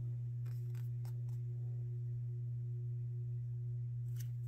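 A steady low hum with a faint higher tone above it, and a few faint soft ticks in the first second or so from the paper book being handled.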